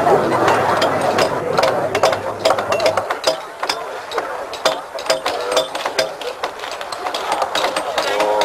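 Hammers striking chisels against the concrete of the Berlin Wall, a quick, irregular series of sharp knocks from several tools at once, over a crowd's talk.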